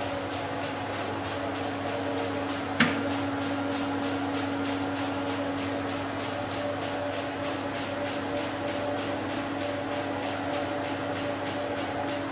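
Electric annealing furnace running: a steady electrical hum with a constant tone, a fast even ticking, and one sharp click about three seconds in.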